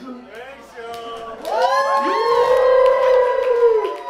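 A long, loud vocal whoop that swoops up about a second and a half in and is held on one pitch for about two seconds, with crowd cheering.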